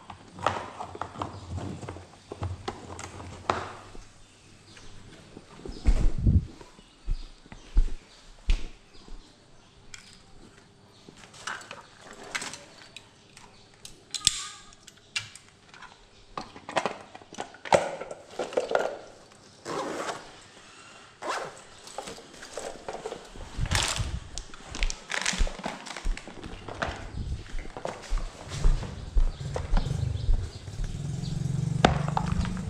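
Irregular knocks, clicks and thumps of handling cables and gear, then footsteps on a hard floor while walking through the house.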